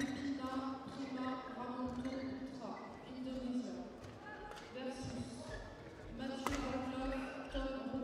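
Indistinct voices in a sports hall, with sharp smacks of badminton rackets hitting the shuttlecock during a rally. The loudest smack comes about six and a half seconds in.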